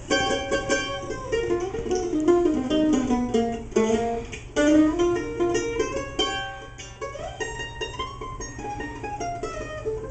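Mandolin playing a slow, free-tempo (rubato) solo intro, its melody notes sustained by rapid tremolo picking.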